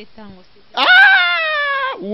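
A person's loud, drawn-out cry lasting about a second, falling slightly in pitch, after a few soft spoken syllables.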